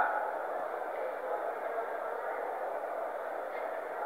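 Steady, faint background hiss of a voice recording, with the tail of a man's voice dying away at the very start.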